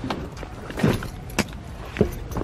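A black rolling suitcase being hauled out of a car, its frame and handle knocking and clunking against the car's interior a few times, sharpest about halfway through.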